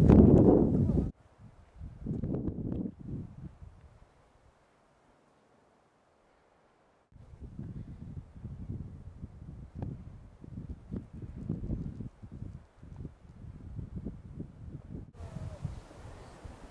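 Wind rumbling on the microphone in irregular gusts, with a few seconds of near silence between edits early on.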